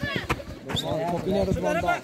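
Male voices talking and calling out, with a few sharp knocks in the first second.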